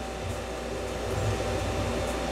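Steady whirring of a fan-driven appliance with a low hum underneath, unchanging throughout.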